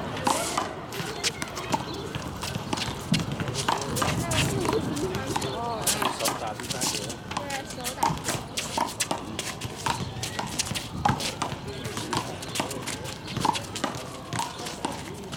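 Small rubber handball in a fast rally, smacking against a concrete wall and bouncing on the pavement in quick, irregular sharp hits, with sneakers scuffing on the court between them.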